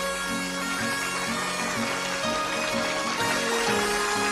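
Instrumental introduction of a Cantopop ballad that begins abruptly. Sustained held notes play over a quick, evenly repeating low figure, with no singing.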